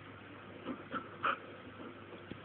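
Old English Sheepdog puppy making three short vocal sounds in quick succession, the last the loudest.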